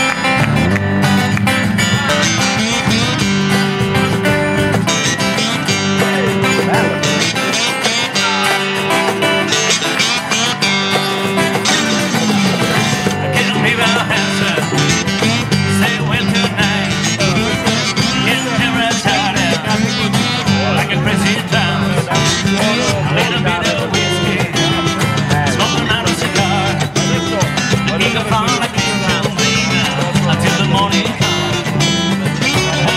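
Live acoustic southern-rock band playing: two strummed acoustic guitars over an electric bass, with a cajon keeping the beat.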